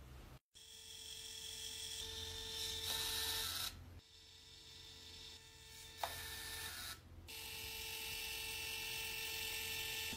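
Canon pocket photo printer running as it feeds out prints: a faint steady whir with a low hum. It cuts off abruptly twice, with a light click about six seconds in.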